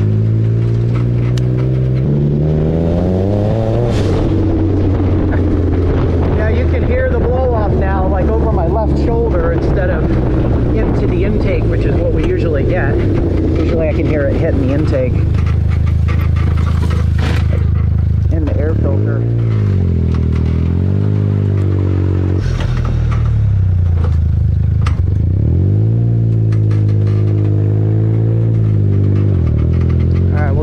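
Turbocharged buggy engine revving hard through first-to-second-gear pulls, its pitch climbing in the first few seconds and then dropping and climbing again three times near the end. A few short sharp hisses fall between the revs, where the blow-off valve vents boost to atmosphere on the shift or lift.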